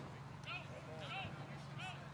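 Faint, distant shouting voices: three short, high-pitched calls over a steady low hum.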